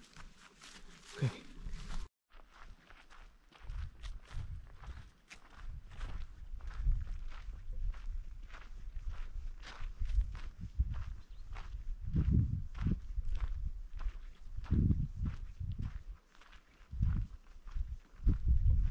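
Footsteps of a person walking through dry grass and brush, a steady series of crunching steps that begins about two seconds in, with bursts of low rumble on the microphone.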